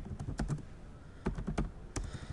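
Typing on a computer keyboard: a few key clicks, a short pause, then a quicker run of clicks and one more near the end.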